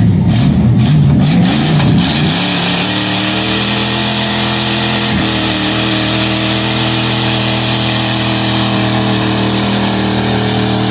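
A 1984 Ford F150 pulling truck's engine under heavy load as it drags a pulling sled. It is rough and loud for about the first two seconds, then settles into a steady note, with a brief dip about five seconds in.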